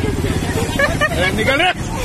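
Several women laughing and chattering excitedly, voices overlapping, over a steady low hum.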